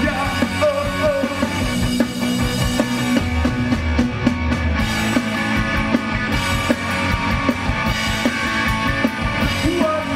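Live punk rock band playing: distorted electric guitars through Marshall amplifiers and a drum kit, with a singer's voice over them.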